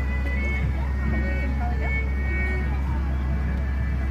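Stretch limousine's engine idling with a steady low rumble, under faint voices and a few short high-pitched tones.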